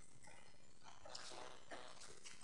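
Faint, steady background hiss of the recording, with a couple of very faint brief sounds a little past the middle.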